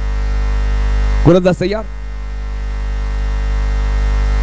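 Loud, steady electrical mains hum with a stack of buzzing overtones, and a short burst of a person's voice about a second and a half in.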